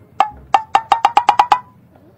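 Wood-block percussion sound effect: two hollow, pitched knocks, then a quick run of about seven more that speed up, their pitch creeping slightly higher, stopping abruptly about a second and a half in.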